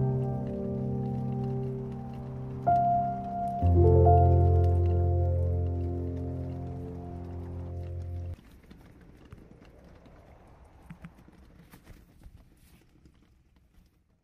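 Closing piano chords of a slow ballad, struck twice more a few seconds in and held, then cut off sharply about eight seconds in. Faint scattered crackles follow.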